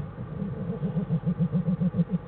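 Black bear cub humming: a loud, rapid, motor-like pulsing of about six to seven beats a second, the call young cubs typically make while nursing. It starts abruptly and breaks off after about two seconds.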